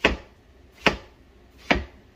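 Kitchen knife chopping down through peeled watermelon flesh onto a plastic cutting board: three sharp knocks, a little under a second apart.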